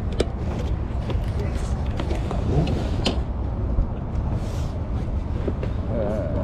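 Outdoor background at a busy field: a steady low rumble with faint voices of people nearby, and a few light clicks and rustles as a cardboard toy box is handled.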